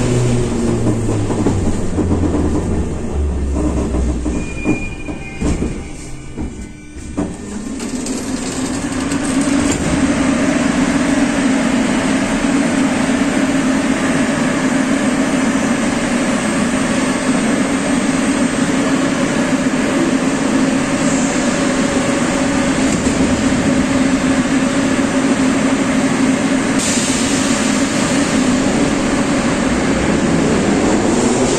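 Moscow Metro 81-717 train. At first it is heard with a low tone stepping down in pitch, then after a brief dip there is a steady hum and rumble of a train running along a station platform.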